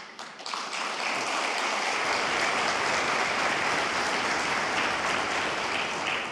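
Seated audience applauding: the clapping builds quickly over the first second, holds steady, and starts to fade near the end.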